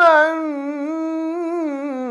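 Male reciter's voice holding one long melodic vowel in tajweed Quran recitation, an unbroken note with a gently wavering pitch that slowly settles lower.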